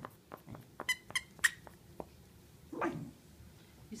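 A dachshund mouthing and tugging at a squeaker-fitted plush duck toy: scattered small clicks and a few short squeaks in the first half, and one brief squeak near the end.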